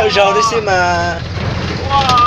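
A person's voice, heard over the steady low hum of a moving vehicle from inside its cabin.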